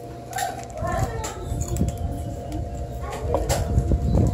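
Indistinct voices of people talking, over a steady hum, with low rumbling and clicks from about a second in.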